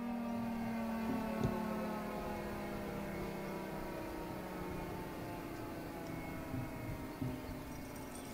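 Federal Signal Thunderbolt 1003 outdoor warning siren winding down after its full-alert cycle: the chopper's tone keeps sounding faintly as its pitch slides slowly and evenly lower while the rotor coasts to a stop. A brief knock is heard about a second and a half in.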